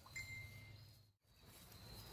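Near silence: a faint, steady high drone of crickets in the background, with a brief faint tone early on and a complete cut-out of all sound just after a second in.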